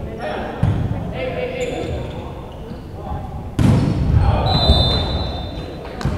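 Volleyball rally in a large echoing gym: the ball struck with sharp smacks, the loudest about three and a half seconds in, amid players' and spectators' shouts.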